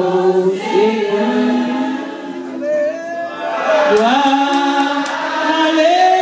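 Congregational praise singing led by a man's voice on a microphone, with long held notes that slide between pitches.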